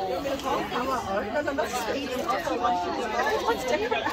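Overlapping chatter of several children and adults talking at once, with no single clear speaker.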